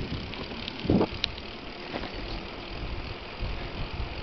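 Low wind and road rumble on the microphone of a moving bicycle, with a short call about a second in and a brief high chirp just after it.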